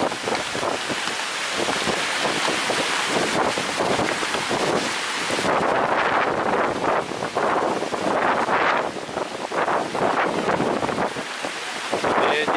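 Heavy wind-driven rain in a storm, coming in gusts that rise and fall, with wind buffeting the microphone.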